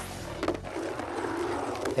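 Bingo ball drawing machine: a steady rolling, rushing rattle with a few light clicks as the next ball is drawn.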